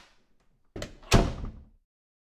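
A single heavy thud, like a door slamming, a little over a second in, dying away within about half a second.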